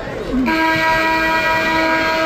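Arena game-clock horn sounding one loud, steady blast of about two seconds, starting about half a second in: the final buzzer ending the game.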